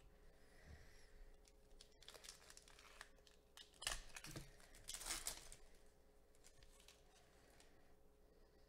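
Wrapper of a 2020 Topps Series 1 baseball card pack crinkling and tearing open, with the loudest rips about four and five seconds in.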